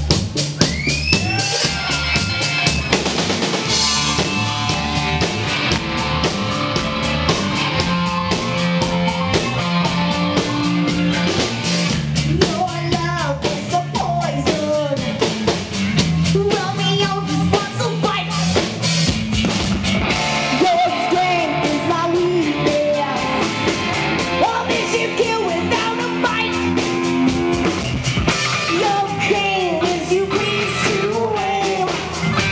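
Rock band playing live: drum kit, electric guitars and electric bass, with a woman singing lead from a little under halfway through.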